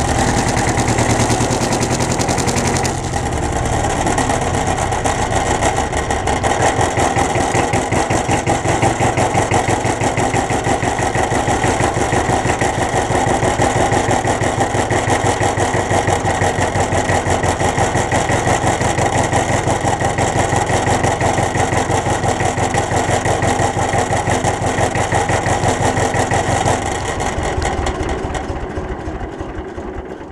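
Old farm tractor's diesel engine running close to the microphone as it drives, with a fast, even beat; its sound changes about three seconds in. Near the end the engine is shut down and dies away.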